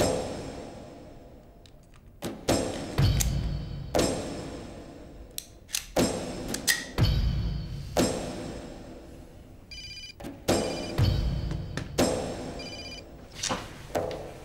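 Dramatic background music with heavy low hits that die away every few seconds. Near the end a mobile phone rings twice in short trilling bursts, before it is answered.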